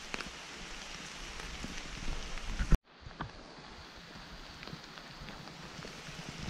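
Steady rain falling, an even hiss with scattered small drip ticks. Near the middle a sharp click and a split second of silence break it where the recording is cut, and the rain carries on after.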